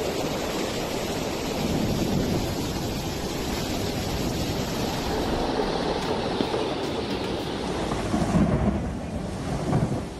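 Muddy floodwater rushing in a torrent: a steady, loud roar of water noise with a deep rumble, its character shifting slightly about halfway through.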